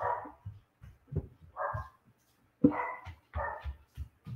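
A dog barking repeatedly: six or seven short barks spread across a few seconds.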